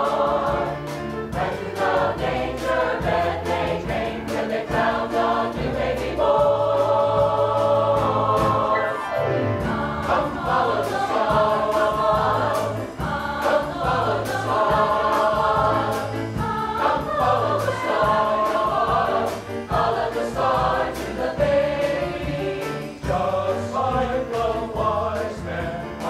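Mixed choir singing in harmony, holding long chords, with a quick downward sweep about nine seconds in.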